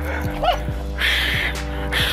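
Background music, with a white pit bull giving a short, high yip about half a second in.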